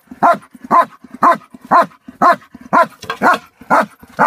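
German Shepherd-type working dog barking at a raised bite sleeve in bite-work training, eight sharp barks in a steady rhythm of about two a second.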